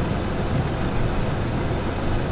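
A car engine idling steadily at a standstill, heard from inside the car's cabin with the driver's window open.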